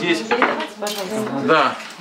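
Soup bowls being set down on a table and spoons clinking against them, with a few sharp knocks, under people talking.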